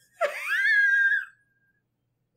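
A person's high-pitched squeal, rising in pitch and then held for about a second.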